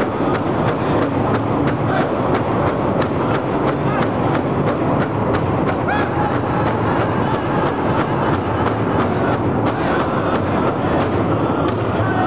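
Powwow drum group: several men striking one large shared drum together in a steady beat, about three to four strokes a second, with their voices singing over it.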